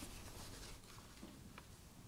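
Near silence: room tone with a few faint rustles and soft clicks.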